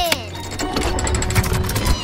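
Cartoon sound effect of a key turning in a treasure chest's lock: a rapid run of mechanical clicks, like a clockwork mechanism, over background music.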